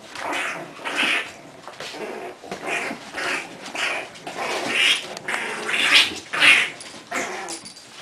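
English bulldog puppies play-fighting, giving a run of short growls and yaps, loudest a little past the middle.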